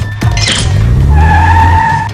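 Sound effect of a car engine revving up, rising in pitch, with a steady tyre squeal starting about a second in.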